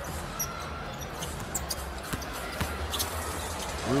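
Basketball arena during live play: a steady low rumble of crowd and arena noise, with a few short knocks and squeaks from the ball and sneakers on the hardwood court.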